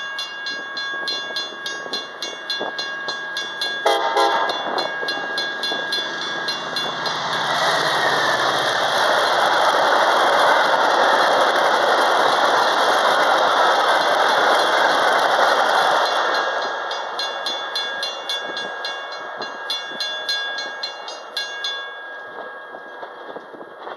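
Metra commuter train running through the station at speed without stopping, deadheading with no passengers, giving a short horn blast about four seconds in. The cars then pass in a loud, steady rush of wheels and bodies lasting about eight seconds before fading. A rapid repeating ding, from grade-crossing bells, is heard before and after the rush.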